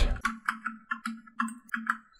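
Light clicking at a computer's mouse and keyboard, a quick run of small ticks about four or five a second.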